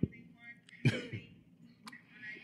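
A person clearing their throat, two short bursts a little under a second in, after a brief thump at the start. A faint, thin voice through a phone speaker is heard in the first half second.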